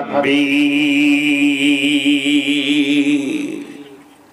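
A man's voice, amplified through a microphone, holding one long chanted note at a steady pitch for about three seconds, then dying away near the end: the drawn-out melodic intoning of a Bengali waz sermon.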